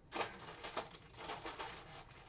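Rustling and crinkling of shopping bags and plastic packaging being handled, heard as a string of short, irregular crackles.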